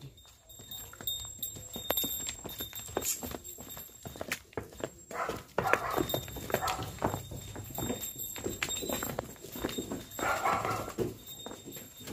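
A cow's hooves knocking irregularly on hard-packed ground and brick paving as she walks.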